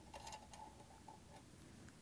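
Near silence, with a few faint ticks as the brass packing nut of a frost-proof hose bib is spun off its threads by hand.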